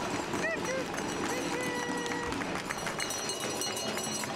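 Crowd of people talking outdoors, with children's high voices calling out over the babble and a few hand claps. One voice holds a note briefly near the middle.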